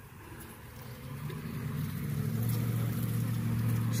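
A low, steady hum that grows louder from about a second in.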